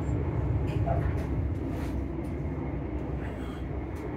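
Passenger train running between stations, heard from inside the carriage by the doors: a steady low rumble with a few faint clicks.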